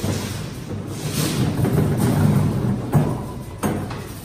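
Metal shopping cart being pulled out of a row of nested carts, rattling as it rolls over concrete, with two sharp knocks near the end.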